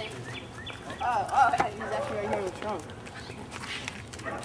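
Indistinct voices talking, loudest from about one to three seconds in.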